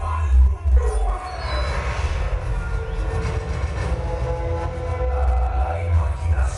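Loud sound-system playback with heavy bass, overlaid from about a second in by a dense rushing noise with a few held tones.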